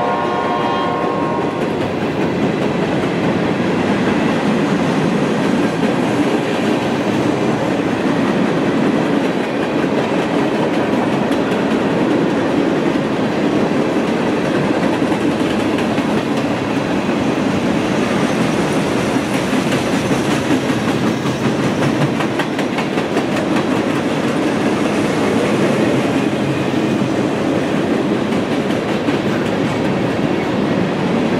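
Freight train of covered hopper cars rolling past at speed: a steady rumble and rattle of steel wheels on the rails with clickety-clack over the joints. A train horn's chord fades out in the first second and a half.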